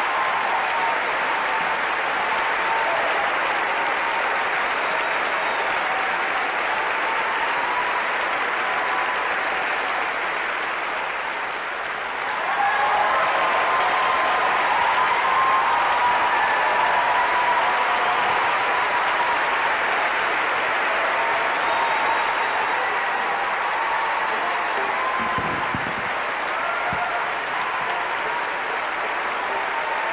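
A large audience applauding steadily; the applause grows louder about twelve seconds in.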